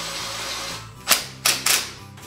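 Cordless power driver running a small bolt in: a brief whir, then three short, sharp bursts as the trigger is pulsed to drive the bolt home.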